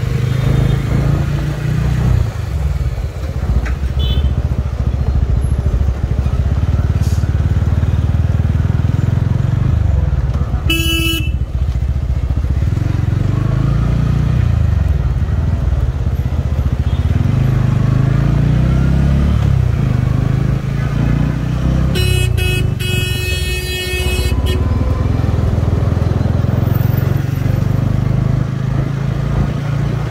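Motorcycle engine running while riding in traffic, its note rising and falling with speed, under road and wind noise. A vehicle horn honks briefly about 11 seconds in and again for about two seconds around 22 seconds in.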